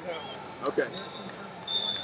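A voice says "okay" over the background noise of a large, busy arena. A thin, steady high-pitched tone comes in near the end.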